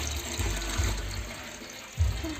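Water running from a garden hose into a large metal pot that already holds water: a steady splashing hiss that grows a little quieter toward the end.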